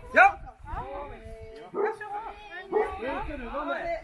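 People's voices talking and calling out in short phrases with pauses between, one voice holding a steady drawn-out note about a second in.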